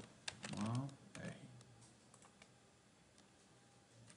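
A few quick computer keyboard keystrokes in the first second or so, pressed as editing shortcuts.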